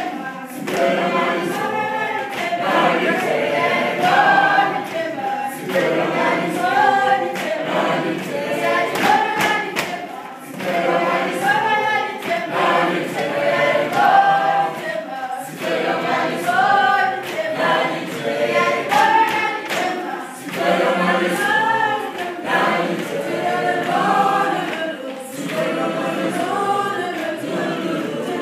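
A group of children singing together unaccompanied, in short phrases that repeat every couple of seconds.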